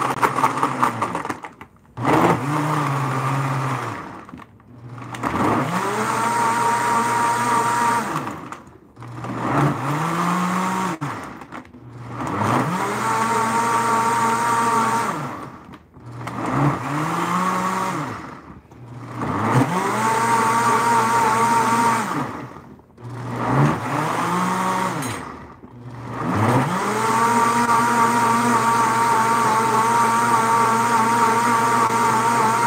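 High-speed countertop blender running a timed program on a thick fruit smoothie with ice, its motor repeatedly slowing almost to a stop and spinning back up with a rising pitch, about every three to four seconds.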